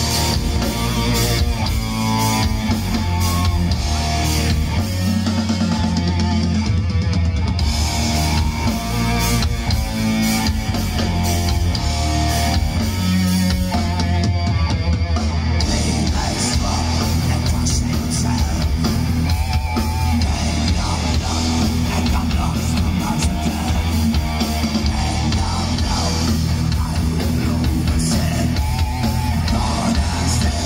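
A thrash metal band playing live: distorted electric guitars, bass and a fast drum kit, loud and unbroken.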